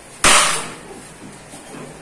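A single loud, sharp slap about a quarter second in, trailing off over about half a second, amid light handling of fondant and cake tools on a stainless-steel worktop.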